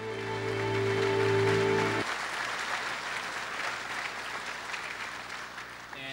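Audience applauding, with a held closing music chord under it that cuts off about two seconds in.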